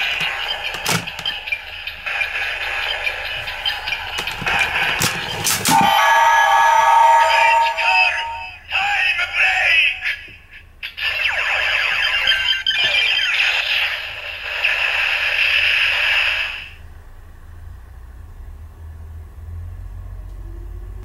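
Bandai DX Ziku Driver toy transformation belt, loaded with the Zi-O and Ex-Aid Ride Watches, playing its finisher sequence through its small built-in speaker: electronic sound effects and music. There are short breaks about eight and ten seconds in, and the sound drops to a low level for the last few seconds.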